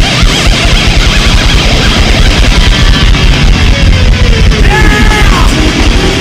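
Heavy metal band playing live: distorted electric guitars over fast, dense drumming, with a note sliding steeply down in pitch about five seconds in.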